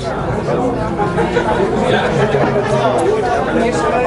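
Overlapping chatter of several voices talking at once, with no music playing.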